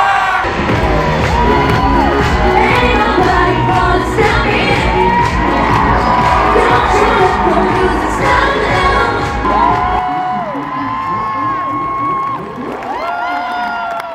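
Live pop music plays loudly over a heavy bass beat, with a crowd screaming and cheering over it. About ten seconds in the bass drops out, leaving the crowd's high screams and cheers.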